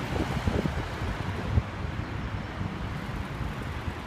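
Street traffic: cars driving through a city intersection, a steady low rumble with wind buffeting the phone's microphone. A brief low thump about a second and a half in.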